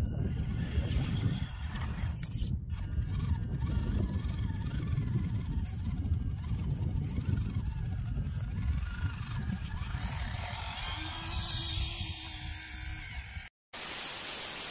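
Wind rumbling on the microphone in an open field, with faint, thin higher sounds above it. Near the end the sound cuts out for a moment, then switches to a burst of loud TV-style static hiss.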